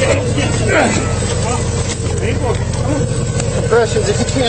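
Patrol boat's motor running steadily under several people's voices calling out.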